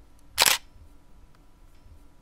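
One short, sharp burst of noise about half a second in, an editing transition sound effect over a cut to black, similar to a camera shutter click; otherwise only faint hiss.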